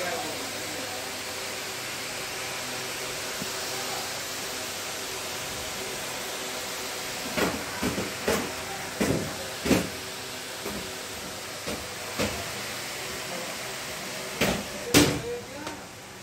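Steady hissing of the coach's air conditioning, with a string of short knocks and clatters in the second half, the loudest about a second before the end.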